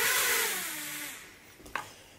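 Ryze Tello mini drone's propellers whirring as it lands, the motor pitch falling and the sound fading out about one and a half seconds in as the motors stop.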